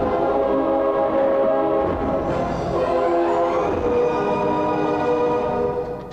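Film background score: loud sustained chords of many held notes, shifting every couple of seconds, over low drum hits.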